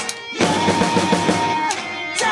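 Acoustic drum kit played along with a recorded rock track with guitar. The music dips briefly just after the start, then comes back in loud with heavy kick drum.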